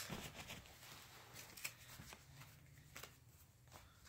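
Near silence: room tone with a low hum and a few faint, brief clicks.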